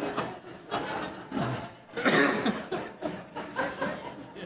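Scattered chuckles and laughter from an audience reacting to a joke.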